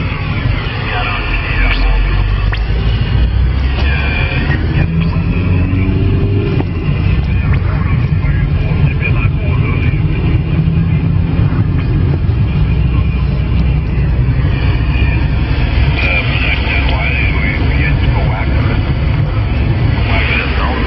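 CB radio receiver on 27 MHz carrying a transatlantic contact: steady loud static with a heavy low rumble, and a weak, hard-to-make-out voice coming through it near the start and again near the end.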